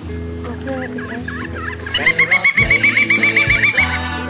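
A bird call: a fast, even run of about fourteen short notes, some seven a second, starting about halfway in. Steady background music plays underneath.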